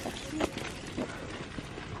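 Faint footsteps of an adult and a toddler walking on an asphalt path, a few soft steps over a steady background hiss.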